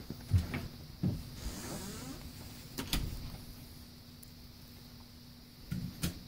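A few soft low thumps and scuffing rustles, the loudest just after the start, with a sharp click about three seconds in: handling and movement noise.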